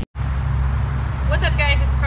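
Steady low rumble of distant road traffic, with high-pitched vocal sounds beginning about halfway through.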